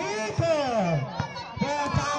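A man's drawn-out vocal call, its pitch sliding down steeply over about a second, over crowd noise. A few short sharp knocks follow in the second half, in the rhythm of a volleyball rally.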